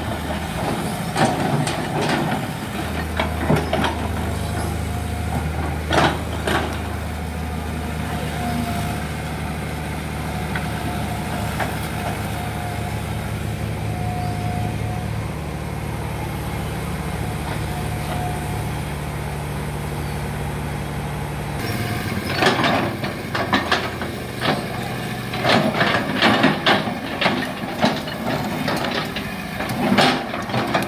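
Kobelco Yutani SK045 hydraulic excavator's diesel engine running steadily under work, with scattered knocks and clatter as the bucket digs and scrapes through ground, stumps and roots. The knocks come thick and loud over the last third.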